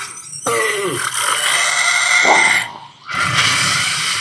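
Dragon sound effects from a TV drama's soundtrack: a creature's roar and screech over a rushing blast of fire breath, in two loud stretches with a short dip about three seconds in.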